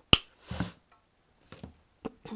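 One sharp click just after the start, the loudest sound, then a short soft rustle and a few faint clicks as an artificial plastic berry stem is handled and pulled apart.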